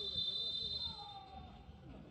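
Referee's whistle: one long, steady, high blast lasting about a second and a half, fading out. Faint distant voices follow.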